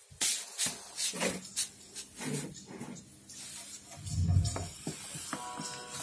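Scattered clicks and knocks with a loud low thump about four seconds in. Near the end, music starts playing through the stacked Martin loudspeaker cabinets.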